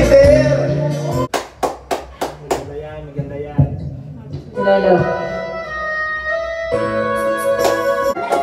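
Karaoke machine's backing track through the room speakers, stopping suddenly about a second in. Five sharp hits follow over the next second, then brief talking, then sustained electronic keyboard chords from the machine from about halfway.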